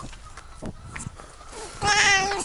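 A British Shorthair cat, held in arms, gives one drawn-out meow near the end, after a stretch of soft handling clicks; the cat is on edge after being chased by a dog.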